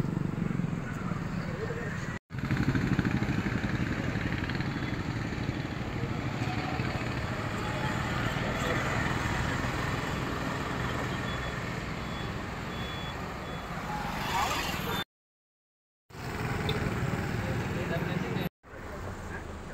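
Road traffic noise with people's voices mixed in, running steadily and broken by a brief silence about two seconds in and another of about a second near the end.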